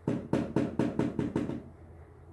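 A quick run of about eight knocks, around five a second, lasting about a second and a half.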